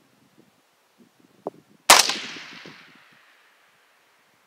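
A single shot from a suppressed .223 rifle about two seconds in, sharp at the start and trailing off over about a second and a half. A faint click comes just before it.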